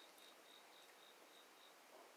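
Near silence, with a faint high-pitched chirp repeating evenly about three times a second and stopping near the end.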